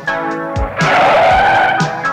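Car tyres screeching for about a second as a car pulls up sharply, over organ music with a steady beat.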